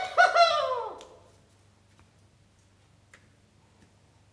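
A man's high-pitched whooping cry on stage, two quick cries that fall in pitch over about a second. After it comes quiet with a low steady hum and a few faint clicks.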